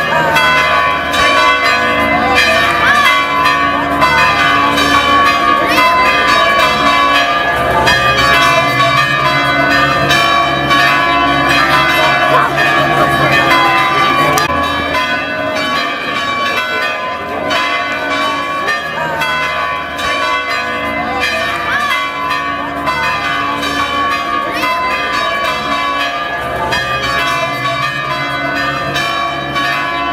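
Church bells pealing, many bells struck in quick succession with their tones ringing on over one another, a little softer in the second half.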